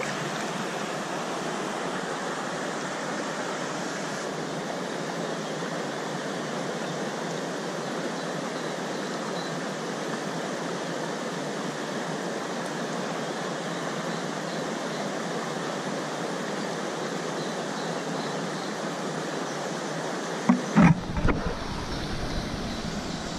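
Steady rushing of a shallow, rocky stream flowing around the wader. Near the end come a few loud, deep thumps.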